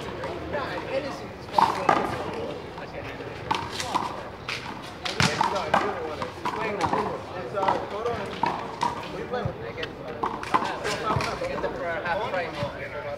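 Players' voices talking indistinctly, broken by several sharp smacks of a rubber ball being hit or bouncing on the concrete court, the loudest about a second and a half in and again about five seconds in.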